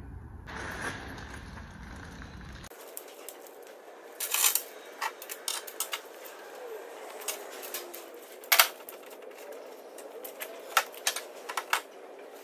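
Irregular clinks and knocks of metal tools and steel parts being picked up and set down on a pickup truck's tailgate and plastic bed liner, one louder knock about two-thirds of the way through.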